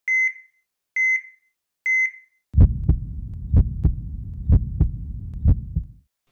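Intro sound effects: three short electronic beeps about a second apart, then a deep heartbeat-like double thump repeating about once a second over a low rumble.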